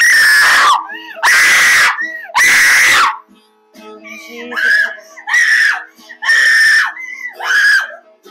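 A person screaming in repeated loud bursts: three long screams in the first three seconds, then four shorter cries, during deliverance prayer. Soft acoustic guitar plays underneath.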